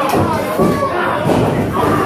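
Several thuds of wrestlers striking each other and landing against the ring during a brawl, over people shouting in the hall crowd.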